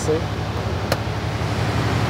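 A 2012 Ram 3500's 6.7-litre Cummins diesel idling steadily, heard from inside the cab just after starting, with a single sharp click about a second in.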